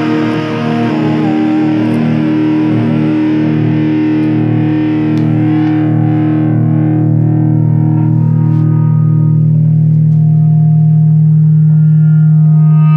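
Punk rock instrumental passage: a distorted electric guitar chord rings out through effects. Its upper tones fade over the first few seconds while the low notes hold steady and swell slightly louder.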